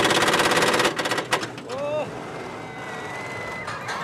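Small backyard roller coaster car rattling fast along its steel track for about the first second, then running on more quietly. A child's short cry comes about two seconds in.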